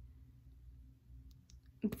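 Quiet pause with a low steady room hum and a few faint, short clicks in the middle, then a woman's voice starting near the end.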